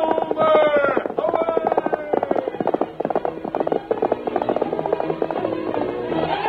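Galloping horse hoofbeats, a radio-drama sound effect, following the tail of a drawn-out shout in the first second or two, with orchestral music swelling in near the end.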